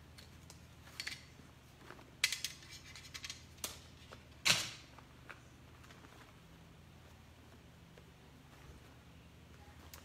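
Light handling noises from an embroidered shirt and its hoop and stabilizer being moved about: a few short clicks and rustles in the first half, the loudest about four and a half seconds in, then quiet room tone.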